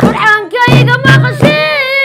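A woman singing Somali baraanbur in a high voice, the melody bending and held through long notes, with a drum beating behind her.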